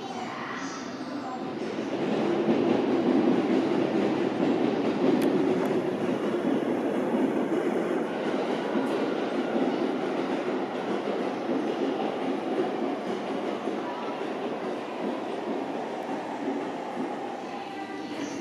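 A train moving along the track. Its running noise swells about two seconds in, is loudest for a few seconds, then slowly dies away.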